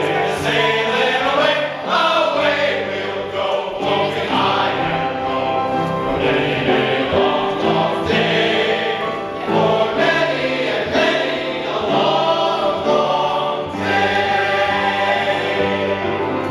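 A chorus of voices singing a show tune together, with musical accompaniment.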